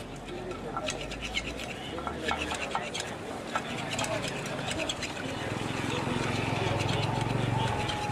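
Busy street-market bustle: people's voices talking in the background with scattered clicks and knocks, and a low engine drone that grows louder through the second half.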